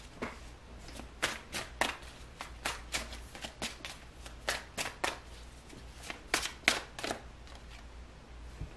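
A deck of tarot cards being shuffled by hand, giving irregular sharp card snaps about two or three times a second.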